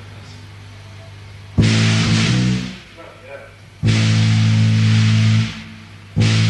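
A rock band's electric guitar and bass striking loud distorted chords together: one about a second and a half in that rings for about a second, then a second one a little before the four-second mark held for nearly two seconds. A steady low hum sits underneath in the quiet gaps.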